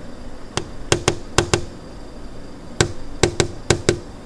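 Light, sharp knocks on a door, about ten in two quick clusters of five, each with a short ring.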